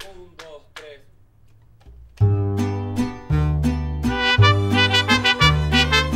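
A few short, soft struck notes, then about two seconds in a mariachi-style band starts playing loudly, with a deep bass and brisk, evenly repeating chords.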